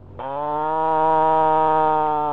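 A person's long, loud scream held at one steady pitch, starting a moment in.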